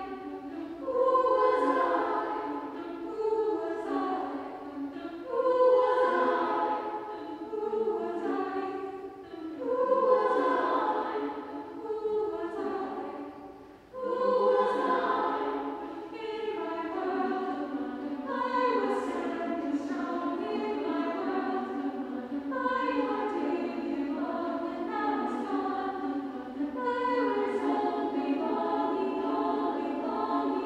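Women's choir singing a cappella. Short phrases swell and fade about every two seconds, there is a brief drop about halfway through, and then the singing is more sustained and even.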